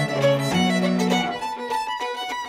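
Fiddle playing a tune over lower guitar backing notes, the music beginning to fade near the end.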